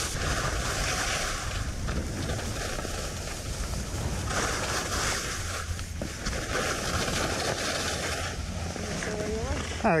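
Wind rushing over a helmet-mounted action camera's microphone and skis hissing over groomed snow during a downhill run, the hiss swelling in stretches as the turns go. A voice starts just before the end.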